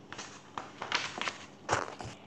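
Picture book being handled: its pages rustling and flapping in several short bursts, with a louder knock near the end as the book is set back down on the table.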